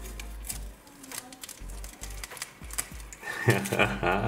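Masking tape crackling as it is peeled off a painted stencil, then near the end a loud, drawn-out scream of joy begins, its pitch bending up and down.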